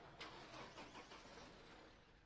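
Near silence: faint background noise with a soft tick shortly in, fading toward the end.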